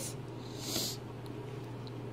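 Quiet room tone with a steady low hum and one short, soft hiss a little over half a second in.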